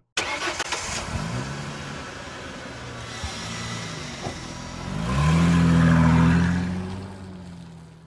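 Car engine sound effect: a click, then an engine starting and running, revving up about five seconds in before fading away.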